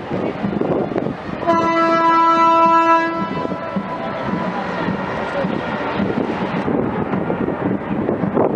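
A ship's horn sounds one steady blast of about a second and a half, loud over a background of wind and crowd noise.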